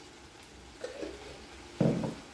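Quiet kitchen handling: a couple of soft knocks in the middle, then a short dull thump near the end as a glass jar is set down on the counter.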